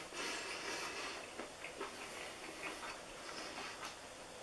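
Faint, irregular soft clicks and smacks of a person chewing a mouthful of oatmeal-banana cookie with his mouth closed.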